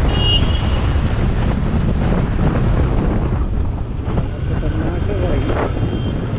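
Wind buffeting the microphone of a moving motorcycle, with engine and road noise running underneath. A brief horn note sounds near the start.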